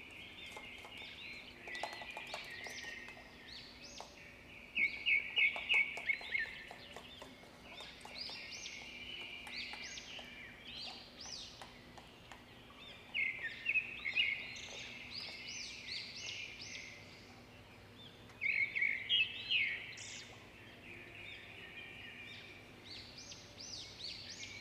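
Small birds chirping in rapid bursts that come and go every few seconds. Soft clicks and slaps of a hand beating batter in a steel bowl run beneath them.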